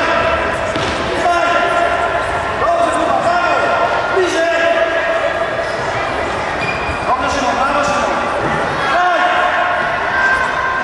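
Young futsal players shouting and calling to each other in a reverberant sports hall, with several thuds of the ball being kicked and bouncing on the hard floor.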